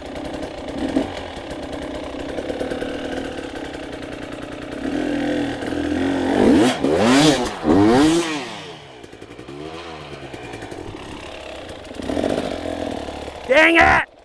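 Dirt bike engine running low, then revved hard in a few quick rising-and-falling bursts about halfway through as the bike climbs the obstacle. It drops back, then revs again near the end.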